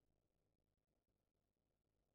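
Near silence: the soundtrack drops out between narration lines.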